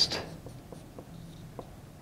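Marker pen writing letters on a whiteboard: a run of faint, short strokes.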